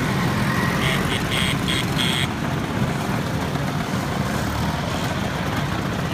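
Several Vespa scooters' small engines running together as the group rides off, with a run of short high-pitched sounds in the first two seconds.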